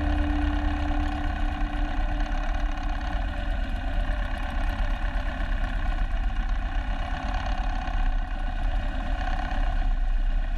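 Harley-Davidson Road King's V-twin engine running steadily at idle pace as the bike rolls slowly, heard from a camera mounted low on the bike. The tail of background music fades out in the first second or two.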